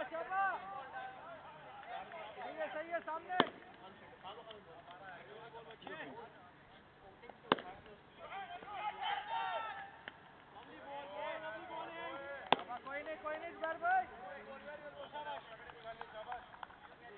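Cricket players' voices and calls carrying across an open ground. Three sharp single knocks are spread through it, about four to five seconds apart, from the cricket ball striking bat or gloves during play.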